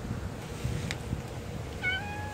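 Young orange tabby cat giving a short, high meow near the end.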